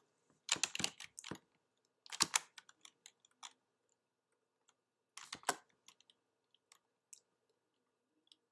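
Computer keyboard keystrokes: three short bursts of typing, starting about half a second, two seconds and five seconds in, with scattered single key clicks between them.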